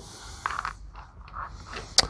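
Soft rustling and scraping as the jump starter's cables and accessories are handled, ending in a single sharp click.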